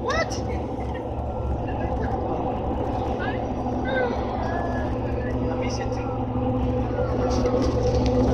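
Steady road and engine noise heard from inside a car's cabin at highway speed, a low rumble with a faint steady hum, and faint indistinct voices.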